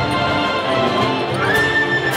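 Full symphony orchestra, strings and brass, playing a march, with a high note that rises and is held near the end.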